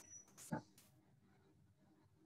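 Near silence, with a brief faint sound about half a second in.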